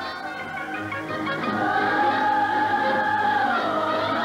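Soundtrack music with singing voices: a long held note that dips in pitch near the end.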